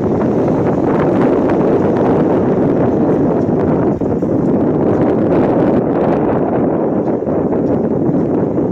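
Wind buffeting the phone's microphone, a loud, steady rush of noise with one brief dip about four seconds in.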